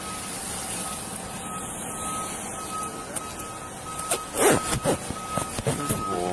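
Electronic warning beep at one steady pitch, repeating about twice a second, over a steady background hum. A cluster of loud knocks comes about four and a half seconds in.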